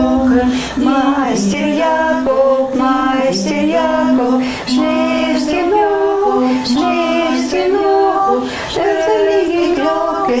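Women singing a German folk song unaccompanied, the kind they sing while working, a steady melody of held notes with no instruments.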